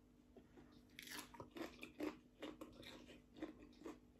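Faint, close chewing of a mouthful of crisp raw green papaya salad and fresh greens: a run of small wet crunches, about three a second, busier from about a second in.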